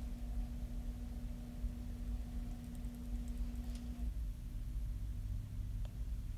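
Quiet room tone: a low steady hum with a faint steady tone over it that stops about four seconds in, and a faint tick just before the end.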